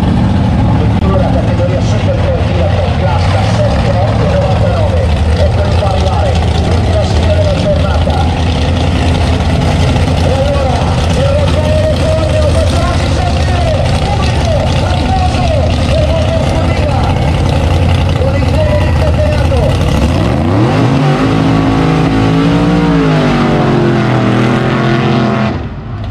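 Drag racing cars' engines running loudly at the start line, with a heavy low rumble. About twenty seconds in, the engine pitch rises as an engine revs up.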